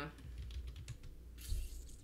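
Computer keyboard keys tapped lightly several times as a stock ticker symbol is typed in, with a brief noisy rush about one and a half seconds in.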